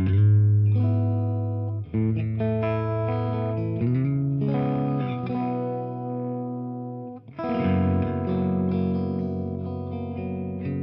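Electric guitar playing a slow progression of ringing open chords through a Red Witch Binary Star effects pedal, each chord sustained for about two to three seconds before the next. The last chord, from about seven seconds in, carries a fast warble.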